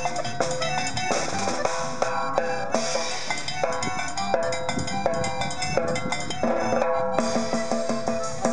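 Upbeat norteño-style band music with a quick, even beat of percussion under repeated pitched notes.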